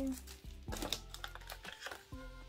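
Light clicks and taps of glossy photo cards and a card sheet being handled and stacked, over steady background music.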